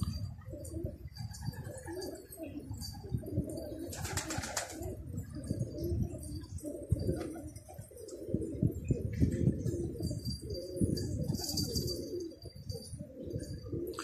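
A flock of domestic pigeons cooing, many low coos overlapping throughout. There is a brief rustling rush about four seconds in.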